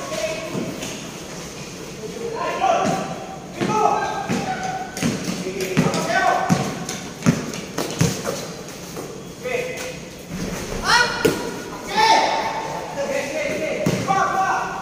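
Players shouting calls to each other during a basketball game, their voices echoing under a large roofed court. A basketball thuds on the court floor several times, mostly in the middle of the stretch.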